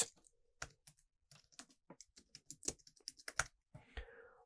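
Computer keyboard typing: a short, irregular run of faint key clicks as a short command is typed.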